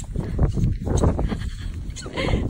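Wind buffeting the phone's microphone outdoors in snow, a dense low rumble with irregular knocks and rustles.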